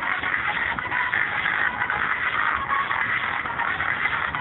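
Music in a thin, low-fidelity recording, with a steady hiss over it.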